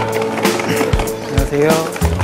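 Background music with a steady beat over the rolling clatter of suitcase wheels on brick paving.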